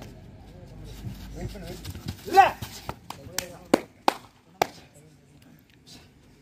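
A man's shout, then four sharp hand claps in quick succession over about a second.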